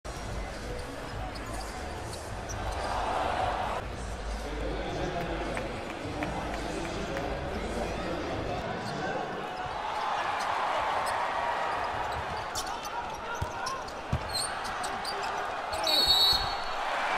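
Sound of a basketball game in a large arena: steady crowd noise that swells twice, a basketball bouncing on the court, and sharp knocks and squeaks in the last few seconds, with a voice speaking over it.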